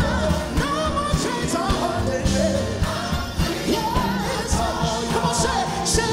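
Live gospel worship music: a group of singers on microphones singing together over a band with drums, loud and steady.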